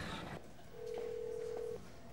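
A single steady electronic beep at one pitch, lasting about a second and stopping abruptly. A background rumble drops away just before it.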